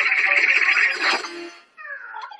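Cartoon soundtrack: music with a cartoon cat's cry over it. The dense sound breaks off about a second and a half in, and a wavering pitched voice begins near the end.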